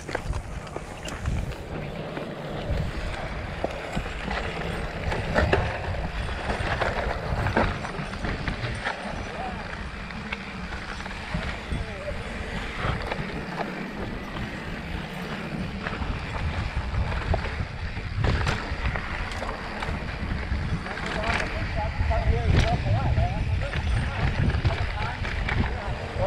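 Mountain bike riding down a dirt trail: tyres rolling over dirt and rocks with frequent knocks and rattles from the bike, and wind on the microphone.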